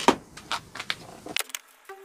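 A handful of sharp clicks and knocks as hands work at a pickup truck's headlight assembly. About two-thirds of the way through, the background cuts out and music begins near the end.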